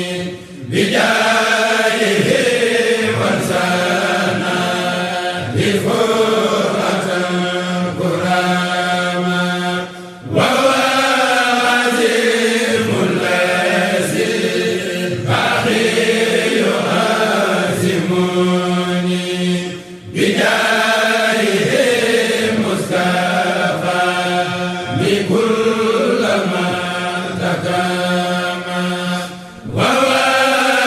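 A Mouride kourel of male voices chanting a Sufi khassida unaccompanied, long melismatic sung phrases over a steady low held note. The chant breaks off for a brief breath pause about every ten seconds, near the start, about ten seconds in and about twenty seconds in, then resumes.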